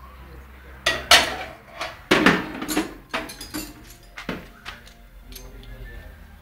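Steel open-end wrenches clinking and clanking against one another and the metal toolbox as a small child pulls them out. About ten irregular sharp metallic clanks, the loudest in the first three seconds.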